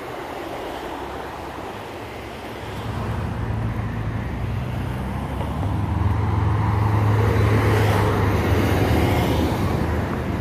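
Road traffic passing a roadside spot: a motor vehicle's low engine hum and tyre noise grow louder about three seconds in and are loudest in the second half.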